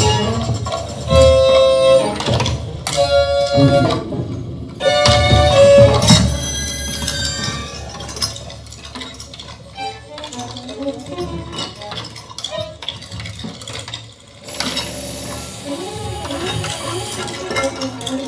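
Improvised violin and percussion duet: loud held bowed violin notes over low drum strikes for the first six seconds, then quieter, sparser playing, with a steady high hiss coming in about four-fifths of the way through.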